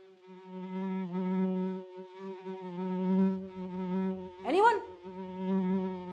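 A steady buzzing fly sound effect, the comic sign of a bad smell, that stutters briefly about two seconds in. A short rising sweep cuts across it about four and a half seconds in.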